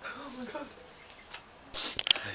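A faint voice at first, then near the end a short, loud rubbing or scraping noise.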